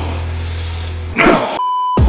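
A short shout, then a steady electronic censor bleep in the last half second, cutting off sharply. Underneath, a low music bed drops out just before the bleep.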